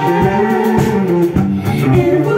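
A live band playing electric guitars, strumming and picking a song.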